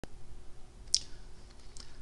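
Quiet room tone with a few faint clicks: a sharp one at the very start, a brighter click about a second in, and a fainter one near the end.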